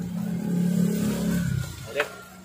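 A motor vehicle engine running close by, a steady low hum whose pitch drops as it fades out near the end. A sharp click comes just at the close.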